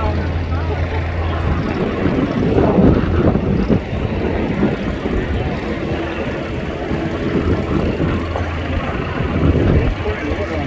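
Fireboat engines running with a steady low drone, strong at first, easing off about a second and a half in and coming back near the end, over a wash of outdoor noise.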